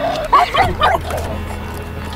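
A small dog giving a few short yips and whines in the first second, over background music.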